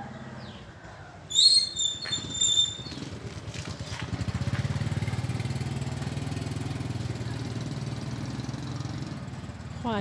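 A few short, sharp high-pitched sounds about one to two and a half seconds in, then a steady low engine hum that swells around four to five seconds in and keeps running.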